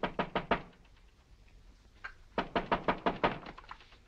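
Knuckles rapping on a glass-paned door: a few quick raps at the start, then a longer run of rapid raps about two and a half seconds in.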